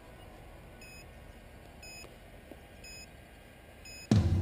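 Four short, high electronic beeps about a second apart over a faint background hiss.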